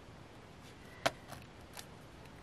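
Faint handling of paper and washi tape, with a few small clicks, the sharpest about a second in.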